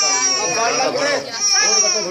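Baby crying in a run of loud, wavering wails, with adults talking over it.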